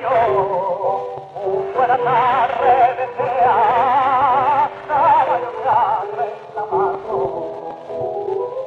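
Male singer holding long, heavily ornamented notes with a wide, wavering vibrato in flamenco style, accompanied by piano, played from an old shellac 78 rpm record with a narrow, muffled sound.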